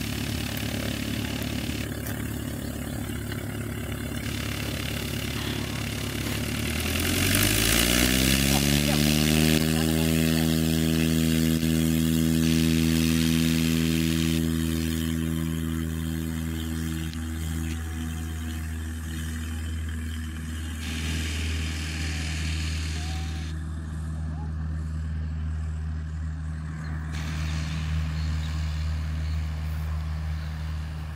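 Single-engine piston tow plane running at idle, then opening up to full power about seven seconds in. Its note climbs quickly and then holds steady for the takeoff run, slowly fading as the plane pulls away.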